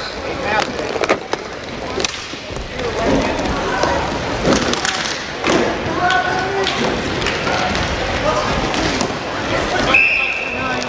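Voices shouting and calling during an inline hockey game, with sharp clacks of sticks and puck scattered throughout.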